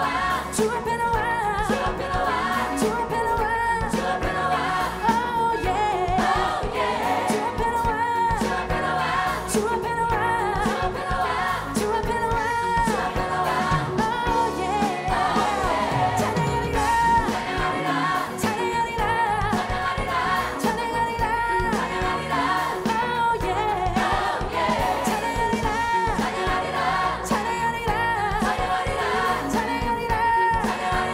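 Live gospel worship song: a female lead singer and a large choir singing in Korean over a full band with a drum kit playing a steady beat.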